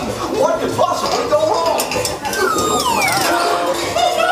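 Cartoon show soundtrack playing through speakers: music and animated character voices, with a long falling whistle effect in the last second and a half.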